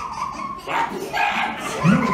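A few short, high-pitched whimpering whines like a dog's, voicing distress from a costumed recycling-bin character who has 'a problem'.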